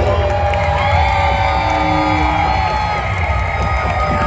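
Loud live band music through a PA, held synthesizer tones that slowly bend in pitch over a pulsing bass, with the crowd cheering.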